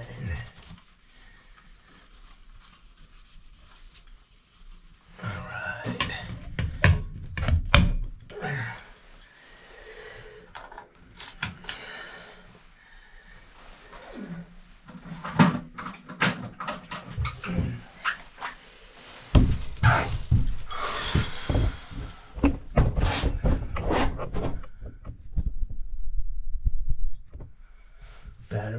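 Hands working a chrome shower-valve trim plate onto a tiled wall: scattered clicks and knocks of metal and fingers against the plate and tile, rubbing, and two stretches of low rumbling handling noise.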